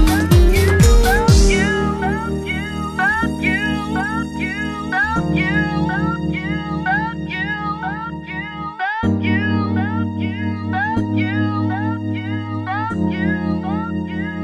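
Instrumental passage of a house track: the kick-drum beat stops about a second and a half in, leaving held chords that change every couple of seconds under a steady run of short rising notes, with a brief drop-out near nine seconds. No singing.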